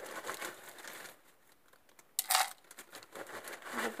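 Caustic soda (sodium hydroxide) flakes being added to a plastic bowl on a digital scale as they are weighed: light rustling first, then a brief louder pour of flakes into the bowl about two seconds in.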